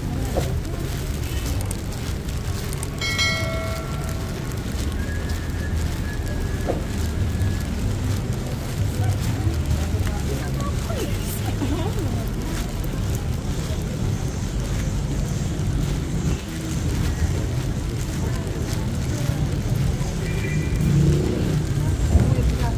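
City street ambience: passers-by talking over a steady low rumble of traffic, with a short pitched sound about three seconds in.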